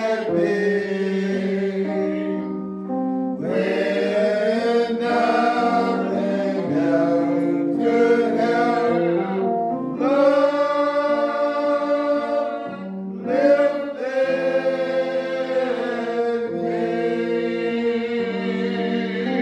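Gospel singing: voices holding long notes over sustained chords, moving from chord to chord every second or two.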